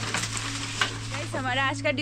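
Dry rustling and crackling of an armful of cut bamboo leaves and stalks being gathered and lifted, then a woman starts speaking near the end.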